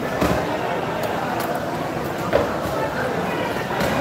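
Indistinct voices and hubbub of a busy fish market, with a few sharp knocks from a long knife cutting a tuna loin on a wooden chopping block.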